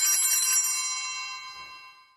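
A small bell, struck once just before, rings on with many high clear tones and slowly dies away, the sacristy bell that marks the start of Mass.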